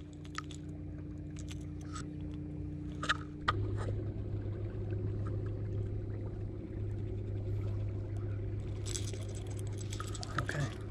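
Electric trolling motor humming steadily; about three and a half seconds in its hum changes pitch and gets a little louder. Small clicks and rustles of fishing line and a topwater plug being handled come through over it.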